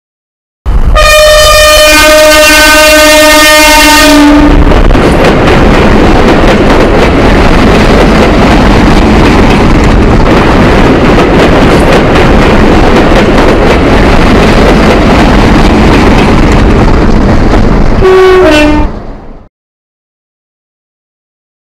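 A train sounds a long, steady horn blast, then passes with a loud, continuous rumble and clatter of wheels on rails. Near the end a short horn blast falls in pitch before the sound cuts off.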